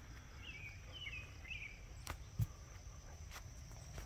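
Faint rural outdoor ambience: a steady high insect trill, with a few short bird chirps in the first two seconds and two soft clicks a little after the middle.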